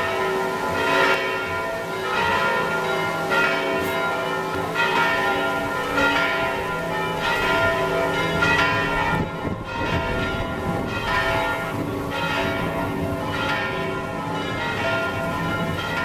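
Church bells ringing from a belfry, struck about once a second, each stroke leaving long overlapping ringing tones.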